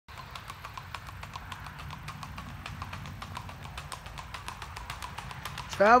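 Tennessee Walking Horse's hooves clip-clopping on a paved road at the rack, a four-beat gait that gives a quick, steady run of evenly spaced hoofbeats.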